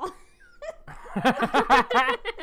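A person laughing in quick pitched pulses that rise and fall several times a second, starting about a second in after a brief lull.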